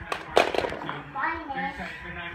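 Plastic toys clattering and rattling briefly as a pile is rummaged through, a quick run of clicks in the first second, followed by a child's voice.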